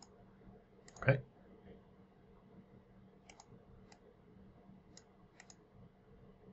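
Computer mouse clicking, faint and sparse: a click at the start, another just before a second in, then small clusters in the middle and near the end. A short voice sound, like a brief 'uh' or breath, about a second in.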